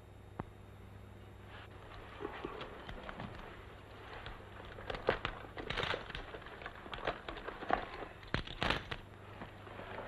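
A man's footsteps on a wooden floor and the handling of a leather gun belt and holster: scattered soft knocks, creaks and small clicks, busier from about five seconds in, over a low steady hum.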